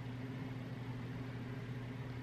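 Steady low hum with a faint even hiss, the room's background noise; nothing else sounds.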